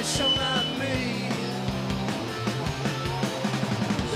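A live rock band playing loud: electric guitars and a drum kit, with a cymbal crash at the start.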